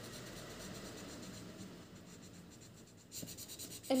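Felt-tip marker rubbing across paper while filling in black areas of an ink drawing: a faint, scratchy sound that grows louder about three seconds in.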